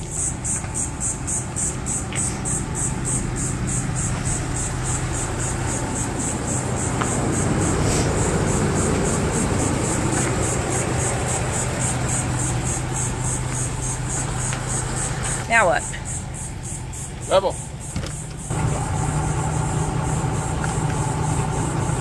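A steady motor hum with a low drone, running without a break except for a brief dip about three-quarters of the way through, when two short voice sounds are heard, before the hum resumes.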